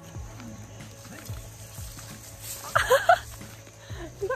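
A low steady rumble with faint scattered sounds, and a short burst of a person's voice about three seconds in.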